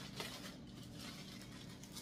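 Faint rustling and small crinkles of a clear plastic gift wrapping as hands pull at its taped top to open it.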